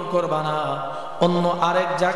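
A man's voice chanting in a sung, melodic sermon style, holding long drawn-out notes; a new note starts a little past halfway.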